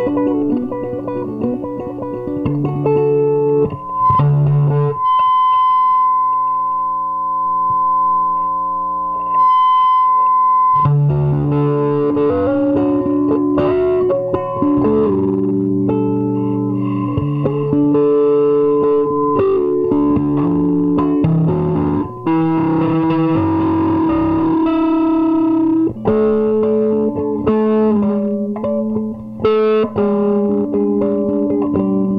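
Nine-string electric guitar with single-coil and piezo pickups, played solo through a small amp and an Ampeg 8x10 cabinet: picked notes and chords over low bass notes, with one high note held steady for about six seconds starting about four seconds in.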